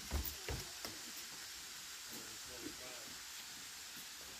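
Steady faint hiss of a small stream of water trickling down a sinkhole's rock wall, with a few sharp knocks in the first half second and faint voices about two and a half seconds in.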